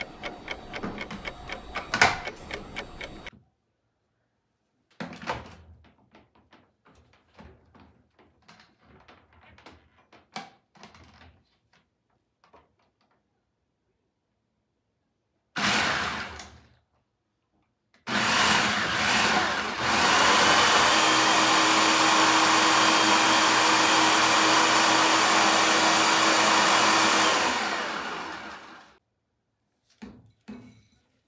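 Food processor grinding Oreo cookies to fine crumbs: a short pulse about halfway through, then a steady run of about ten seconds with a low hum under it that winds down near the end. Before that, a clock-like ticking and light plastic clicks as the bowl and lid are fitted.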